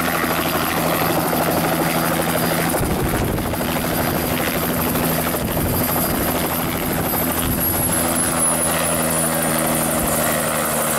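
Bell 206-type turbine helicopter hovering down and touching down on a landing pad, with a steady rotor chop and a loud turbine whine. The high whine falls in pitch over the last few seconds.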